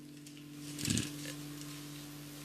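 Quiet pause with a steady low hum, and one short soft sound about a second in.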